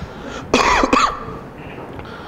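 A man's single short cough, about half a second in and lasting about half a second.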